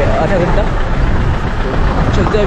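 Steady low rumble of a Mahindra Bolero SUV running, heard from inside the cabin by the window, with a man's voice briefly at the start.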